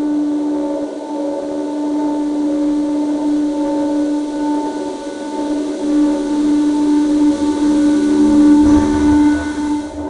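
A sustained droning tone on one steady pitch with overtones, in the manner of a dramatic film score; it swells louder about eight to nine seconds in, with a low rumble beneath.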